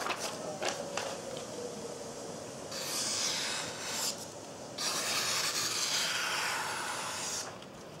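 A knife blade slicing through a sheet of paper in two long cuts, each lasting about two seconds, one right after the other from about three seconds in: a paper-cutting test of the edge's sharpness.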